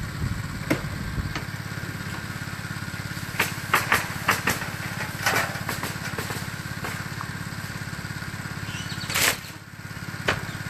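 A small engine runs steadily with a low, rapid pulse, while sharp knocks ring out every so often from shingles being nailed down, a cluster of them in the middle and a loud one near the end.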